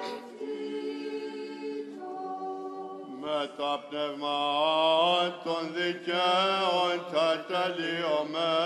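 Unaccompanied Orthodox church chanting. For about three seconds a steady drone of voices is held; then the voices rise into a louder, slow melody with wavering, ornamented notes over it.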